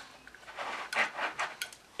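AR-15 gas tube being wiggled and pulled back and forth in its mount: soft metallic rattling and scraping, with a short click about one and a half seconds in. It holds firm, a sign the gas tube is secured well.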